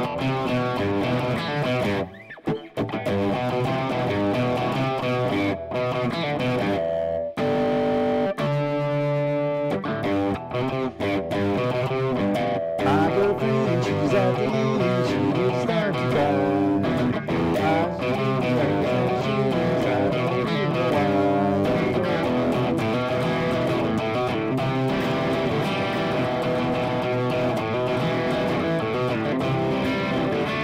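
Telecaster-style electric guitar played through an amp, strumming and picking rock chords, with short breaks about two and seven seconds in and a few held chords soon after. Some notes sound slightly out of tune, which the player puts down to pressing the strings down too hard.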